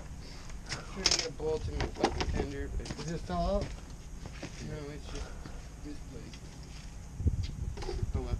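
Faint, distant talking, with a short low thump about seven seconds in.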